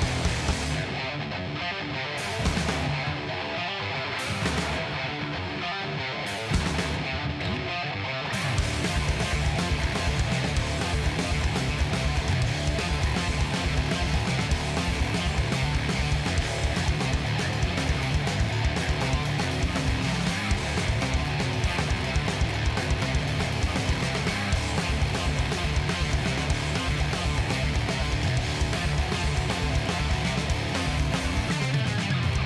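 Live stoner-rock band playing an instrumental passage on electric bass, electric guitar and drums. For the first eight seconds or so the band plays a sparse, stop-start break without cymbals, then the full band comes back in with drums and cymbals.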